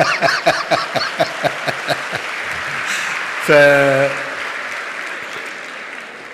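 Hall audience applauding, the clapping fading away over the last few seconds. Over the first two seconds a man laughs in quick pulses close to the microphone.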